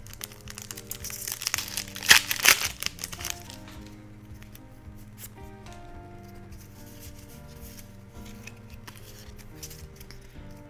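Foil wrapper of a Pokémon booster pack crinkling and being torn open, with several sharp crackles during the first three seconds. After that only soft background music with held notes remains.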